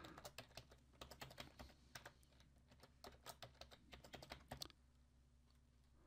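Faint computer keyboard typing, a quick run of keystrokes that stops about three-quarters of the way through.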